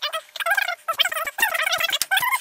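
Sped-up speech: a man's narration played back several times faster than normal, so it comes out high-pitched, rapid and unintelligible, like chattering or gobbling.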